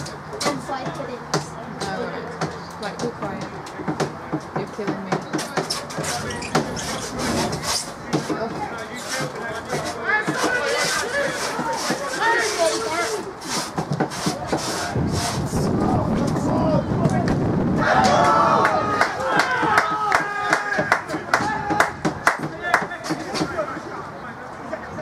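Voices of football players and onlookers calling out across an outdoor pitch, too far off for the words to come through, with many short clicks and knocks mixed in. The calling grows louder about three quarters of the way through.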